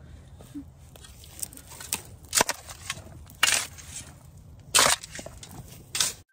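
Shovel blades scraping into loose soil and dirt being thrown into a hole during backfilling: about five short crunching strokes, the two longest in the middle and near the end.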